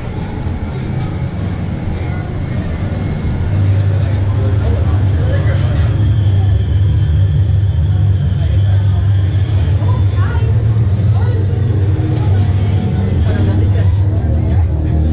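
A haunted maze's ambient soundtrack: a steady low rumbling drone that swells about three and a half seconds in and then holds, with faint voices and music behind it.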